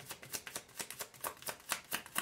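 A deck of tarot cards being shuffled by hand: a quick, even run of soft card slaps, about five a second.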